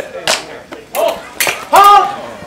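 Smallsword blades clinking against each other a few times during a fencing exchange, followed near the end by a loud shout.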